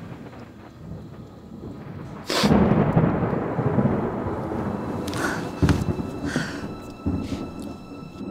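A sudden loud crack of thunder about two seconds in, followed by a long rolling rumble that swells again twice.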